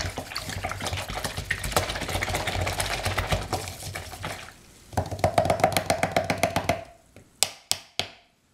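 Paintbrush being stirred and scrubbed in paint or water, a rapid scratchy rattle with a short break about halfway through. A couple of sharp clicks near the end.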